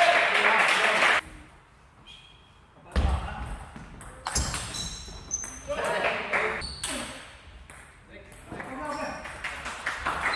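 Table tennis rally: the ball clicks sharply off rackets and the table, with short high pings. A loud voice, like a player's shout, comes in the first second, and further voices sound later.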